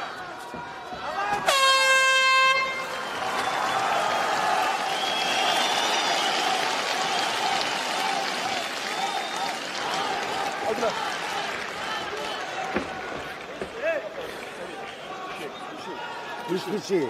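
The end-of-round horn sounds once, a single steady blast about a second long, about a second and a half in. After it comes a steady din of arena crowd noise with shouting voices.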